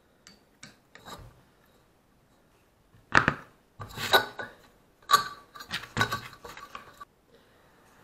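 The metal housing of an Ursus C-360 tractor starter motor is knocked and scraped as it is pulled apart during disassembly. A few faint clicks come first, then one sharp knock about three seconds in, then a run of scraping and clattering as the end housing comes off and worn brush dust spills out.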